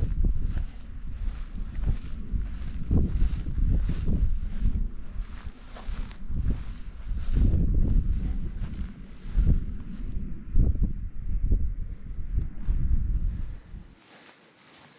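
Gusty wind buffeting the microphone: a low rumble that swells and drops every second or so, easing off briefly around ten seconds in.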